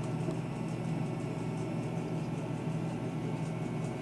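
Steady low hum with an even hiss of room background noise, unchanging throughout, with a few faint small ticks over it.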